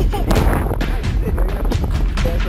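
Background music with a loud drum beat, about four hits a second.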